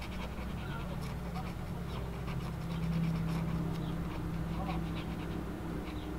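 Quick, irregular scratching strokes of a Pigma Micron felt-tip pen on paper as it fills in solid black shading, over a steady low hum.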